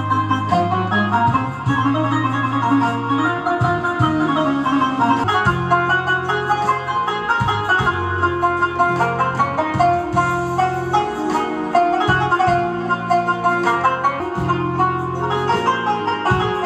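Electronic keyboard (org) playing a quick melody of short notes over held bass notes.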